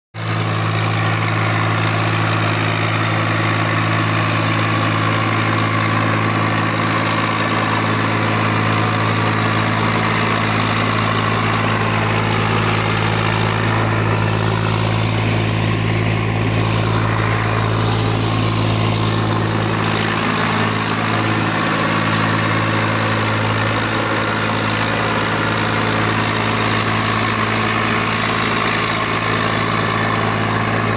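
Massey Ferguson tractor's diesel engine running steadily while hauling a loaded double trolley.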